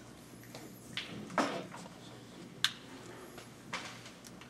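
Hushed room full of seated people, with a few scattered small knocks, clicks and rustles, including a sharp click about a second in and another near the middle.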